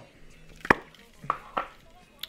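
A handheld spray can being handled: one sharp knock about a third of the way in, then two softer knocks about a second later.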